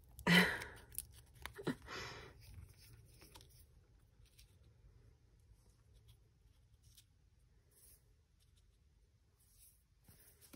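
Soft rustling and light taps of corrugated cardboard and paper pieces being handled and laid onto a book cover. It is loudest in the first two seconds, then very quiet.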